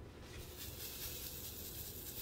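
Hundreds of tiny diamond-painting drills sliding and pattering against a plastic tray as it is tilted, a soft, steady, high hiss.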